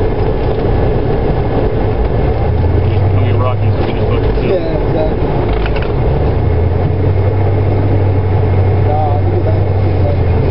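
A steady low engine drone, loud and continuous, that eases off for a couple of seconds mid-way and then comes back, with faint voices under it.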